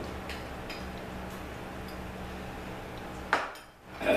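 Spoon clinking lightly against a bowl a few times, then a louder knock near the end, over a steady low hum.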